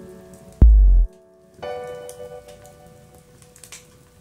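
Electronic music: a short, deep bass hit a little over half a second in, then a sustained pitched drone from about one and a half seconds in, with scattered faint crackles above it.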